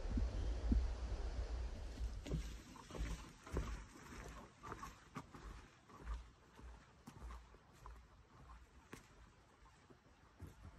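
Footsteps on a leaf-littered forest trail from someone carrying a canoe overhead, soft irregular thuds and rustles growing fainter as they walk away. Low rumbling handling noise in the first couple of seconds.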